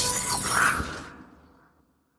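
Logo sting sound effect: a sudden hit followed by a bright, high shimmer that fades out over about a second and a half.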